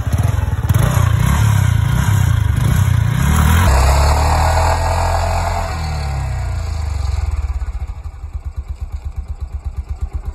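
Yamaha R15M's 155 cc single-cylinder engine revved hard for a burnout with traction control switched off, the rear tyre spinning on loose dirt. The revs rise and fall for about four seconds and are held briefly, then drop to a pulsing idle near the end.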